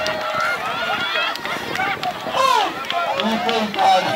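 Several voices of children and adults overlapping, calling out to one another, with one rising and falling call about two and a half seconds in.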